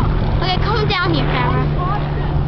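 Several children's high voices chattering and squealing over one another, with no clear words, over a steady low hum.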